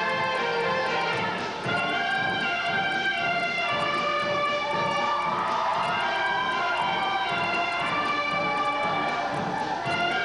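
Grade-school concert band playing, with a group of children shouting over the music about a second in and again near the end: the war whoop the piece calls for.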